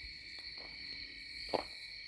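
A pause in speech filled by a quiet, steady high-pitched whine, with one faint click about one and a half seconds in.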